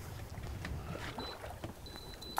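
Wind and choppy water around a charter fishing boat on open lake water, a low steady rumble with a few faint knocks.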